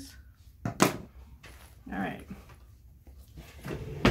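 Scissors snipping off loose thread ends at a sewn seam: a sharp double click a little under a second in, then quieter fabric handling.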